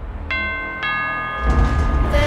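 Horror trailer soundtrack: two bell strikes about half a second apart, ringing on over a low drone, with a deep swell in the low end near the end.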